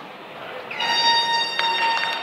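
An air horn gives one steady blast of about a second and a half, starting just under a second in: the signal to start play. A sharp knock falls near the end.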